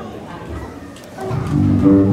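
Live band instruments come in about a second and a half in with a low, sustained chord that includes bass notes, after a quieter stretch.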